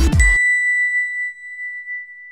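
Electronic outro music cuts off, and a single high bell-like ding from the animated logo sting rings on and slowly fades away.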